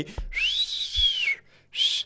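A person whistling at the music cutting out: one long whistle that rises and then slides back down, followed by a short second whistle near the end.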